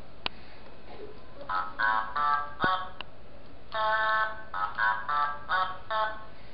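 High-pitched electronic voice of a plush singing toy, chattering short syllables in two runs starting about a second and a half in, with a few sharp clicks along the way.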